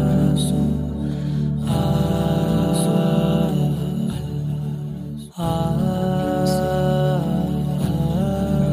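Wordless vocal background track: layered voices holding long 'ah' notes that glide from one pitch to the next, with a brief break about five seconds in.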